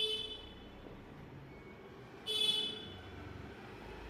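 Two short horn toots: the first fades out just after the start, the second comes about two and a half seconds in, over faint steady background noise.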